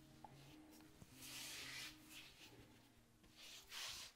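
Near silence, with a faint, soft rub of hands rolling sourdough dough over a floured granite counter, clearest from about a second in for nearly a second.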